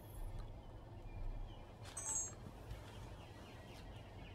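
Quiet room tone with a low hum, broken by a brief high chirp about two seconds in and a few fainter short chirps near the end.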